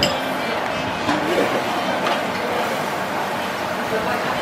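Busy restaurant background: indistinct voices and chatter at a steady level, with a few faint clinks of tableware.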